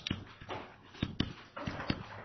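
Stylus writing on a tablet computer's screen: a few soft taps and clicks over faint room noise.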